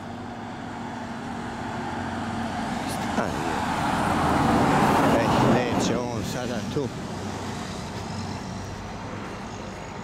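A car passing by on the road, its tyre and engine noise building to a peak about five seconds in and falling in pitch as it goes past and fades away.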